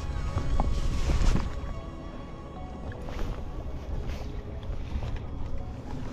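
Wind rumbling on the microphone and small waves slapping the boat, with a few light knocks in the first second or so.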